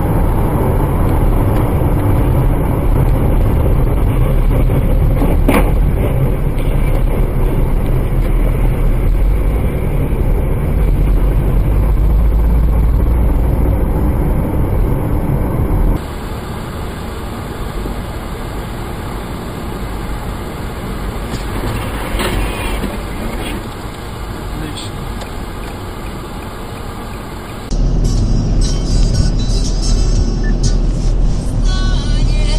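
Car engine and road noise inside the cabin, as recorded by a dashcam microphone, with a short knock about five and a half seconds in. The noise drops quieter about sixteen seconds in and comes back louder near the end.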